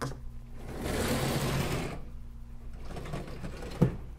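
Sliding chalkboard panel being moved along its track: a rolling, scraping rumble for about a second and a half, then a single sharp knock near the end as it comes to a stop.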